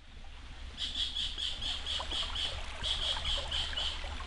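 Outdoor nature ambience fading in over the first second: a rapid high chirping from a small animal, about five chirps a second in runs broken by short pauses, over a steady low rumble.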